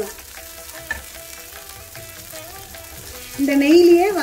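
Wooden spatula briskly stirring flattened rice (aval) as it roasts in a nonstick pan: a soft, steady scraping rustle of the flakes against the pan.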